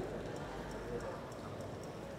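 Quiet room tone with faint clicks and soft knocks from a gooseneck podium microphone being bent and repositioned by hand.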